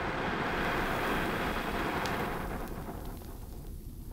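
A dull rushing noise over a low rumble, loudest in the first two seconds and fading away toward the end.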